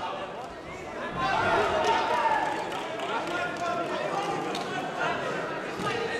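Several people talking and calling out at once in a large sports hall; the voices are indistinct.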